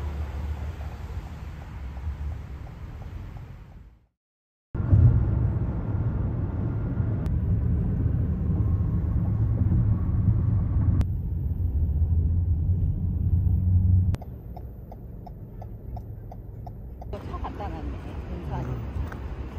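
Road noise inside a moving car: a steady low rumble that drops out briefly about four seconds in, comes back louder, then falls quieter after about fourteen seconds, with faint ticks a few times a second.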